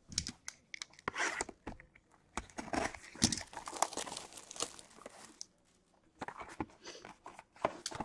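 Paper and card-stock trading-card packaging being torn open and crinkled by hand, in irregular rustles and sharp clicks, with a short pause a little past the middle.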